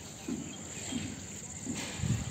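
Crickets chirping in a steady, high-pitched chorus, with a few faint, short low sounds beneath it.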